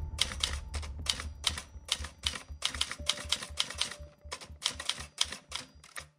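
Typewriter keys clacking in a rapid run of clicks, about five a second, with a brief pause a little over four seconds in; a low hum sits beneath the first half.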